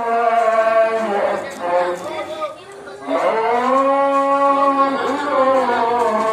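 A cow bellowing in several long calls while it is restrained, its legs bound to a carrying pole; the calls break off briefly about halfway through, and the longest is held for about two seconds.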